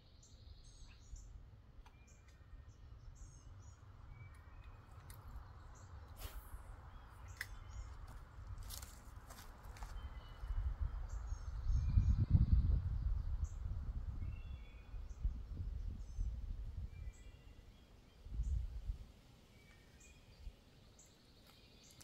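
Small birds chirping in short repeated calls, over a low rumble on the microphone that swells about halfway through and comes again near the end.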